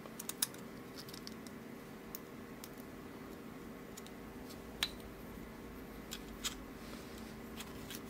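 Scattered small metallic clicks and ticks from handling a brass mortise lock cylinder as its plug is drawn out with the key and a follower rod during disassembly; the sharpest click comes about five seconds in.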